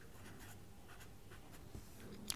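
A pen writing on a paper workbook page, faint, a few short strokes as digits are written.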